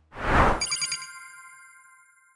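Logo sound effect: a short whoosh, then a bright chime of several high ringing tones that fades away over about two seconds.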